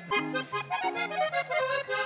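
Vallenato button accordion playing a quick passage of short, repeated notes, with lower sustained notes beneath.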